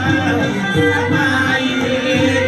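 Cambodian folk dance music: a singing voice over melodic instruments and hand drums keeping a steady beat.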